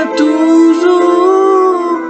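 A man's voice singing one long held note of a French ballad, the pitch bending upward about halfway through, over a keyboard backing.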